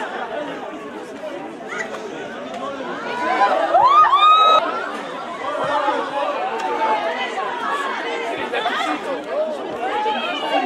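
Voices of spectators and players at a football match shouting and calling out, many overlapping, with one loud rising shout about four seconds in.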